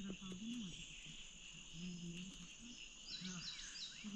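Faint, steady chirring of crickets or other insects in a grassy meadow, with faint voices murmuring in the background. Near the end come three short, high chirps in quick succession.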